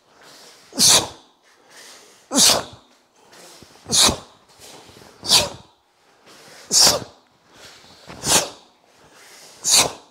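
A karateka's sharp, forceful exhalations, one hissing breath with each strike or block of a kata done at full speed. They come about every second and a half, seven in all, each loud and brief.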